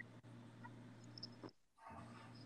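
Near silence: faint room tone with a low steady hum, a tiny click at the start and a few faint high squeaks a little after a second in.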